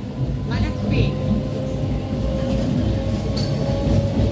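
Passenger train carriage running: a steady low rumble with a thin steady whine, heard from inside the carriage.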